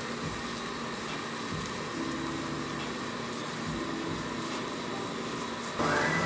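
Steady background hiss of room noise, with faint low tones that come and go through the middle.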